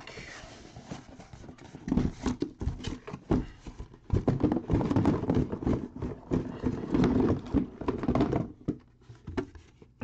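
Cardboard case being handled and opened by hand: irregular scraping, rustling and knocks of cardboard, busiest from about two seconds in and dying down near the end.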